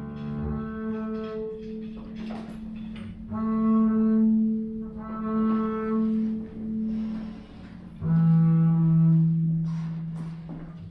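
Upright double bass bowed (arco): a series of long held notes, each one to three seconds and sometimes two sounding together, with a lower, louder note near the end.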